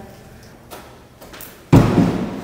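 A climber dropping off a stone pillar and landing with one loud, heavy thud near the end, which rings briefly in the stone-walled hall. A couple of faint taps come before it.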